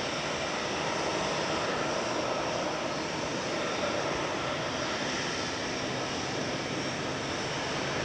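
Boeing 757 airliner's twin turbofan engines running at low power as it rolls along the runway after landing: a steady jet rumble and hiss with faint high whines.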